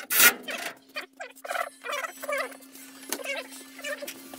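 Fast-forwarded work audio: voices and tool noises sped up into high, squeaky, garbled chatter, over a steady hum. It opens with a loud clatter.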